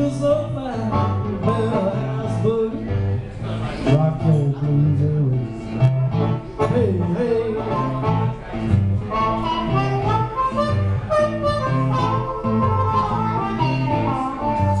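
Blues harmonica played cupped against a microphone, wailing bent notes over an archtop guitar driving a steady boogie shuffle rhythm: an instrumental break in a harmonica-and-guitar blues duet.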